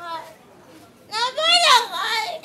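A woman's high-pitched voice wailing and crying out, beginning about a second in.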